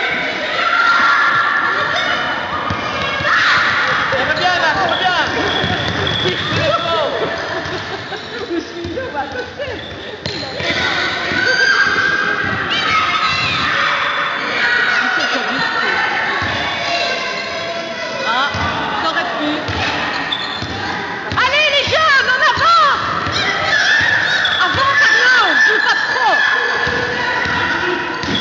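A basketball bouncing on a gym floor during a youth basketball game, over indistinct calls from players and spectators, echoing in a large sports hall.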